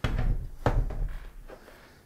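Heavy Onewheel Plus electric board set down on a table: a deep thunk, a second knock just over half a second later, and a low rumble that fades within about a second.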